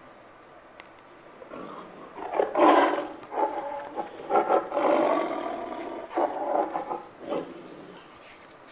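A recorded tiger roar played back from a touch-activated talking picture book. It comes in several surges from about a second and a half in until near the end, sounding thin through the book's small speaker.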